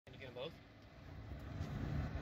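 A brief snatch of a voice near the start, then a low rumble that builds toward the end.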